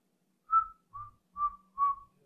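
Four short whistled notes in quick succession, about half a second apart, the first a little higher in pitch than the rest.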